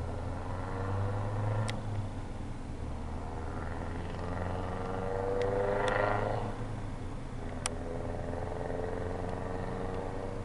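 A road vehicle passing by, growing louder to a peak about six seconds in and then fading, over a steady low hum. A few sharp clicks are heard.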